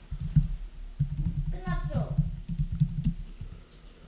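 Typing on a computer keyboard: a run of quick keystrokes that thins out near the end, with a brief voice about halfway through.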